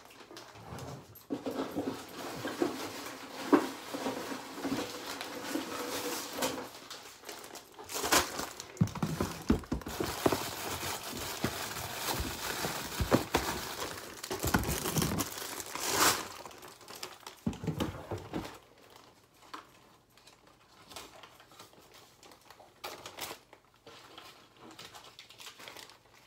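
Clear plastic bag crinkling and rustling as it is handled and filled with small medical supplies, with scattered clicks and knocks. It is busiest for the first two-thirds and quieter, with only occasional clicks, near the end.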